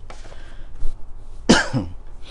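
A man clears his throat with one loud, harsh cough about one and a half seconds in, after a short sharp sound a little earlier.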